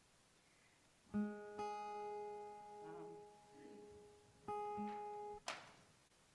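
Acoustic guitar: a chord strummed about a second in and left to ring for about three seconds, then a second chord about four and a half seconds in that is damped short after about a second.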